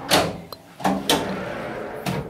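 Mirrored bathroom cabinet door being swung and shut by hand, with two soft knocks about a second apart. The door moves smoothly and quietly.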